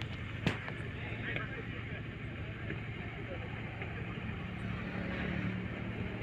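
A football being kicked: two sharp knocks about half a second apart at the start, over a steady low hum and faint shouts of players.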